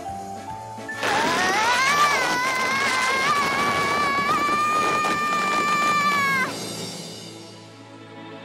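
A little girl's long, high-pitched scream, rising at first and then held steady for about five seconds before cutting off, over background music.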